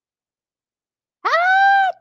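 A woman's high-pitched, drawn-out exclamation "Ahh!" in excitement, held steady for under a second and starting a little over a second in.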